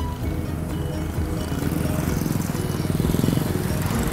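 Road traffic: a vehicle engine passing close, growing louder and loudest about three seconds in, over background music.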